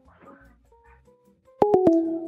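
Faint background music, then about one and a half seconds in a loud electronic telephone line tone sets in suddenly. It is two tones at once, interrupted by a few quick clicks and stepping slightly down in pitch, as a phone call disconnects or connects.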